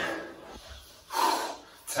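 A man's sharp, noisy breath during a squat-and-press rep with a weighted bag, heard once a little over a second in.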